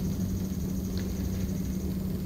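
Steady low background hum, with one faint click about a second in.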